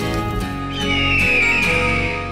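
Closing background music, with a loud high cry-like tone sliding downward in pitch over the second half.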